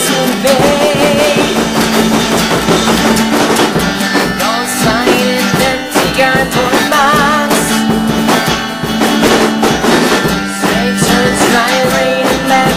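Electric guitar and a Gretsch drum kit playing a rock song together, the guitar holding wavering, vibrato-laden notes over a steady drum beat.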